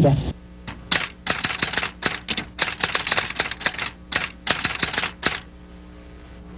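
A fast, irregular run of sharp mechanical clicks, about six a second, starting shortly in and stopping near the end, over a faint steady hum.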